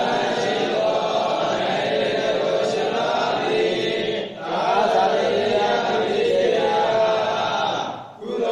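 Several voices reciting a Pali scripture text together in a steady chant. There is a brief break for breath about four seconds in, and another at the end.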